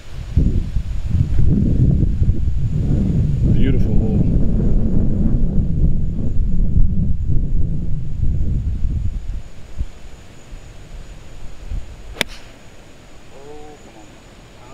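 Wind buffeting the microphone as a loud, rough low rumble that dies down after about nine seconds. Then, about twelve seconds in, the single sharp click of a golf club striking a ball off the tee.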